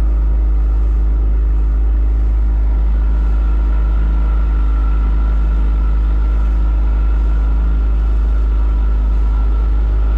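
Small motorboat's engine running steadily under way, with a constant deep rumble and a steady whine, over the wash of water along the hull.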